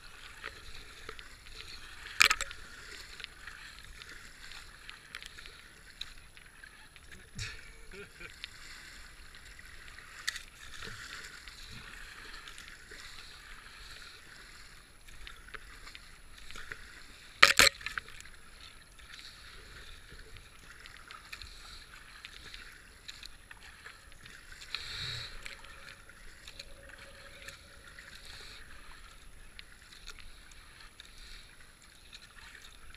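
Kayak paddling: the paddle blades dip and splash in the water in a steady wash, heard close up from the boat. Two sharp knocks stand out, one about two seconds in and one a little past halfway.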